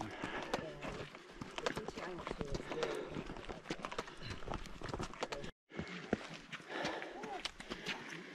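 Footsteps of hikers on bare sandstone, a run of irregular scuffs and taps, with faint voices talking in the background. The sound drops out completely for a moment a little past the middle.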